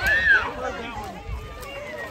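Voices of children and adults: a short high shriek right at the start, then several people talking and calling over one another.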